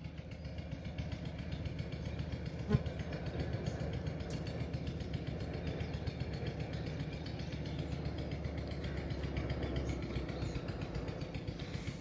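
Steady low rumble of a running engine or motor in the background, with a single short click about three seconds in.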